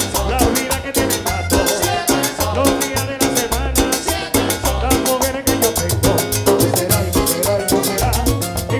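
Live Colombian tropical dance orchestra playing an up-tempo number, with accordion and timbales over a bass-heavy, steady dance beat.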